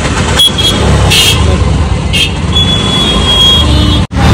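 Road traffic: vehicle engines running in a steady low rumble, with short higher-pitched sounds about a second in and about two seconds in.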